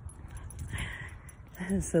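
Wind rumbling on a phone microphone, with one short, soft breathy sound about a second in; a woman starts speaking near the end.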